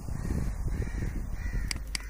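Faint bird calls in the background, two short calls about a second apart, with two sharp clicks near the end.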